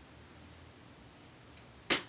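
Quiet room tone, then one sharp click or knock near the end.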